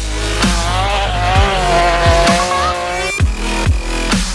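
Electronic dance music with heavy drum hits. For about three seconds a BMW E36 rally car is heard over it as it corners, a wavering held engine and tyre sound that cuts off abruptly near the end.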